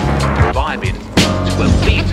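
Boom bap hip hop beat at 93 BPM with a jazz feel, drums and bass, and turntable scratching over it. In the first second a record is scratched back and forth in quick rising and falling sweeps.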